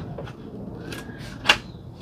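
A plastic book and tablet holder being pushed into the slot on a folding laptop table's top, with a few light knocks and one sharp click about one and a half seconds in.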